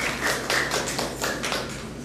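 A few people in the audience clapping in quick, uneven claps that fade away toward the end.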